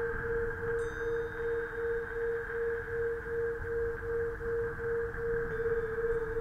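Synthesized sci-fi ambient drone: one steady low-mid tone throbbing a little over twice a second over a windy hiss and low rumble. A brief high chime-like ping sounds about a second in and fades, and the throb quickens near the end.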